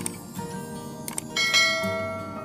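Background music with a bright bell chime about one and a half seconds in that rings on and fades: the notification-bell sound effect of a subscribe-button animation.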